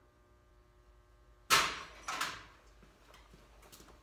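Two sudden knocks with a brief scraping rustle after each, about a second and a half and two seconds in, then a few faint clicks over a low steady hum.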